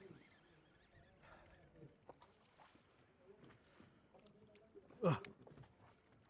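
Mostly quiet: faint wind and water noise, with one short, loud vocal exclamation that falls in pitch about five seconds in.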